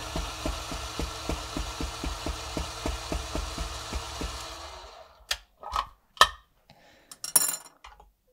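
Niche Zero conical-burr coffee grinder running through a small dose of beans while its silicone bellows is pumped: a steady low hum with a regular ticking about five times a second. It winds down about four and a half seconds in and is followed by several sharp knocks as the metal dosing cup is handled.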